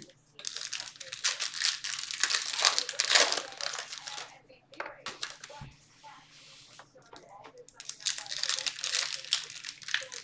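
Foil baseball card pack wrappers being torn open and crinkled in the hands: two spells of dense crackling rustle, with a quieter few seconds in the middle.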